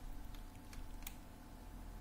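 Faint clicking of a computer keyboard and mouse, a quick run of light taps in the first second.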